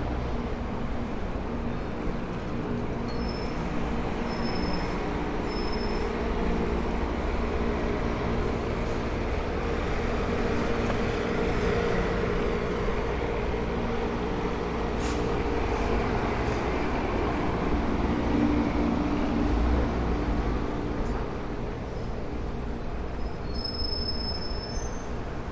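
City street traffic, with a heavy vehicle's engine running close by, growing louder through the middle and easing off near the end.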